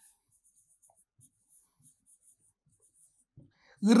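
Faint scratching of a stylus writing on a pen tablet, in a run of short quick strokes.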